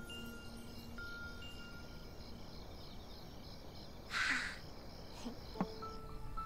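Quiet background music of soft chime-like, bell-like notes that ring and fade, with a brief rushing swish about four seconds in and a small click shortly before the end.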